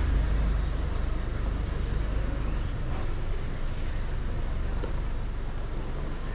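Low, steady rumble of an idling truck engine, fading after about three seconds, over general street noise.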